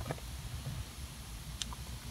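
Quiet low background rumble with a couple of faint clicks from the removed armrest bolt and its metal washers being handled.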